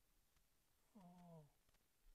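Near silence, broken about a second in by a short, drawn-out, wordless "uhh" from a man's voice, sinking slightly in pitch.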